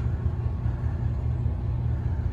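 Steady low drone of the water taxi's engines, heard from inside the enclosed passenger cabin.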